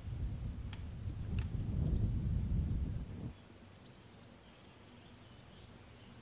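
A low rumble that builds and then cuts off suddenly a little after three seconds, with a few faint clicks in the first second and a half; faint bird chirps follow.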